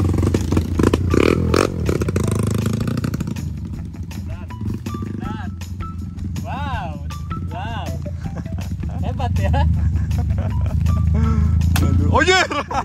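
A dirt bike engine running for the first few seconds. After that comes music with a wavering sung voice over a steady low bass.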